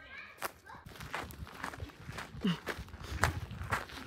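Footsteps in boots on a dry dirt trail, a steady walking pace of about two steps a second.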